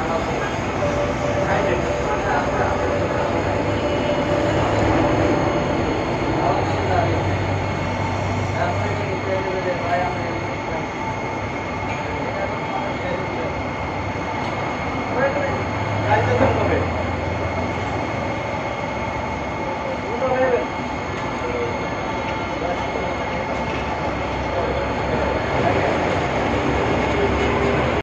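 Aquarium aeration running: a steady rushing noise with a thin high whine, and faint voices now and then.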